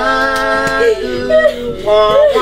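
A voice singing long held notes in a yodel-like style, its pitch stepping to a new note about a second in and again near the end.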